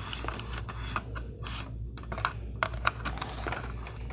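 Cat5 cable being pushed by hand through a plastic electrical box into the wall cavity: irregular light clicks and rustling as the cable rubs against the box and drywall edges.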